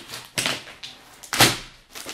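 Plastic shrink-wrap crinkling and tearing as it is pulled off a large board game box, with two louder rips about half a second and a second and a half in.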